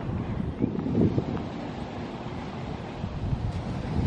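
Wind blowing across the camera microphone, an uneven low rumble.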